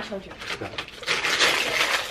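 Wrapping paper and tissue paper being torn and rustled as a gift box is opened, a dense crinkling that grows louder in the second half.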